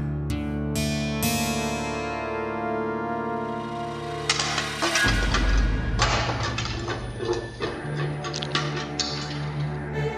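Dramatic TV-serial background score: sustained tones struck by several sharp hits at the start, then a busier passage of rapid percussive strikes from about halfway through.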